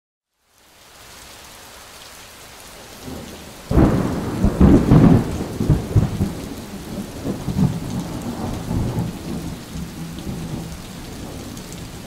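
Steady rain fading in, then a sudden loud thunderclap about four seconds in that rumbles on for several seconds and slowly dies away under the continuing rain.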